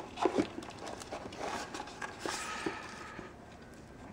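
A hand rummaging in a cardboard box packed with paper and plastic wrapping: a few soft knocks at the start, then rustling and crinkling through the middle, getting quieter near the end.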